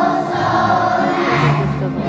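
A children's choir singing together, the young voices holding sustained notes.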